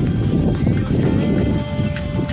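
Wind buffeting the microphone of a phone carried on a moving bicycle: a loud, gusty low rumble. A faint held tone comes in about halfway through.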